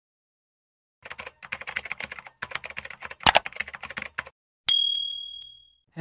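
Rapid keyboard typing clicks for about three seconds, with one louder keystroke among them. Then a single bright bell-like ding rings out and fades over about a second.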